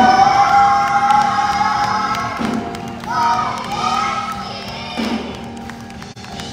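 Children's gospel quartet singing into microphones, a young voice leading in three long phrases, each sliding up into a held note, the first about two seconds long, over a steady low accompaniment.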